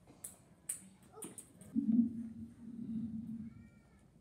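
Light knocks of a child's footsteps on a hollow stage platform, then a drawn-out low voice-like sound, loudest about two seconds in.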